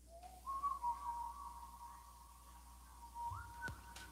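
Faint, high, whistle-like tones that slide up at the start, hold steady, then slide up again near the end, with a light click shortly before the end.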